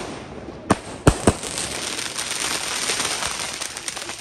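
Aerial Diwali firework shells bursting: a sharp bang at the start and three more bangs within the first second and a half, then a dense, steady crackle. The shells burst very low, close to the people who lit them.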